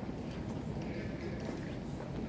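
Quiet, reverberant airport terminal hall ambience: a steady low hum with a few faint, irregular clicks, like footsteps on the hard stone floor, and a trace of distant voices.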